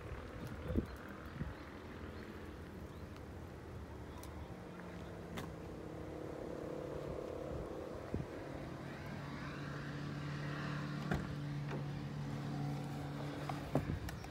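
Toyota Estima minivan's engine idling: a steady low hum that grows louder through the second half, with a few light clicks.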